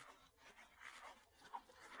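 Near silence, with one faint short tick about one and a half seconds in.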